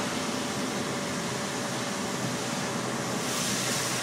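Steady road noise inside a moving car on a wet highway: tyres hissing on the wet pavement over a low engine hum, with a brief swell of hiss near the end.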